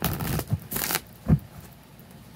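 A deck of tarot cards being riffle-shuffled by hand: two quick riffles of flicking cards in the first second, then a single thump, the loudest sound.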